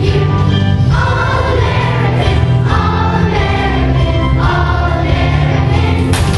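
Children's choir singing held notes together over a musical accompaniment with steady low notes.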